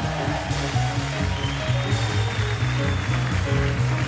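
Live jazz quartet playing: acoustic piano over an upright bass line and drums, with a steady cymbal wash on top.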